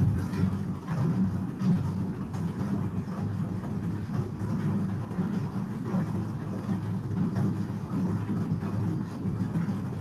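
Bicycles being pedalled on stationary indoor trainers: a steady low whirring rumble.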